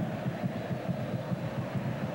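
Steady stadium crowd noise from a packed football ground, heard through the old television broadcast's sound, continuous and without breaks.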